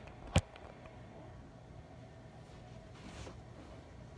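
One sharp knock about half a second in as the recording phone is handled and set down, then quiet room tone with a faint rustle near the end.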